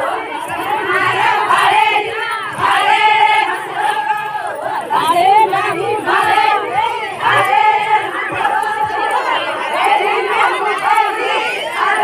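Many women's voices singing a Bhili wedding song together, in short repeated phrases with held high notes, several voices overlapping.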